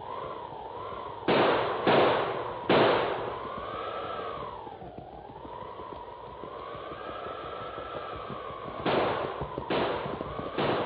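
Radio-drama sound effects of six-gun revolver shots, three in quick succession a little over a second in and two more near the end, over a howling storm wind that rises and falls in pitch.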